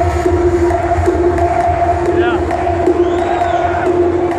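Electronic dance music from a DJ set over a club sound system, with heavy bass and a long held synth note, under a large crowd cheering and shouting. A few high whoops rise and fall in the middle.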